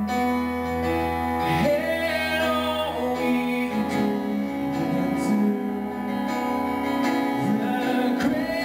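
A man singing a slow worship song over sustained keyboard chords. The voice comes in about two seconds in, with long held notes that waver.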